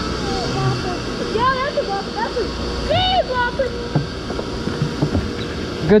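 Short wordless voice sounds that rise and fall in pitch, the clearest about three seconds in, over a steady low hum and a faint held tone.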